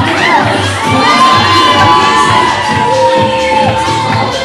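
Bar audience cheering and screaming with high shouts, over dance music with a steady beat.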